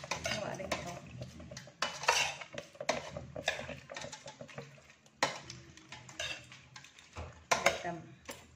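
A metal spoon stirring chicken feet in a stainless steel pot, knocking against the pot's side with irregular clinks, the sharpest about two seconds in, about five seconds in and near the end.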